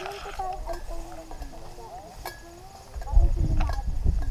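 Indistinct background chatter of hiking companions while walking through tall grass, with a few light clicks. From about three seconds in, a louder low rumble comes onto the microphone.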